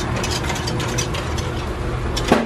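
Wire whisk rattling rapidly against the inside of a metal kettle as sauce is whisked, a quick run of small clicks over a steady low hum.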